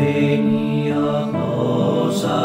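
Slow, meditative chamber-ensemble music with long held notes from winds, cello and guitar, the chord changing just over a second in.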